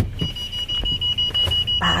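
A steady, high-pitched electronic warning tone starts a fraction of a second in and holds, slightly pulsing, after a sharp click at the very start.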